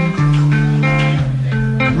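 Electric blues band playing: electric guitar lines over held bass guitar notes that change pitch every half second or so.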